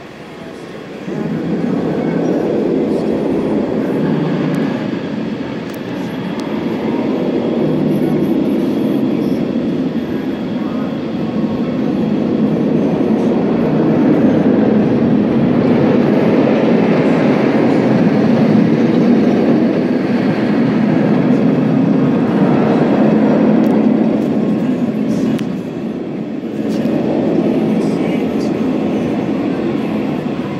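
Flight Deck, a B&M inverted roller coaster, with its train running the course on a test run: a loud, continuous roar of wheels on steel track that starts about a second in and swells and dips a few times as the train moves through the layout.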